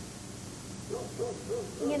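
Owl hooting: a quick run of short hoots about a second in, over a steady low hum.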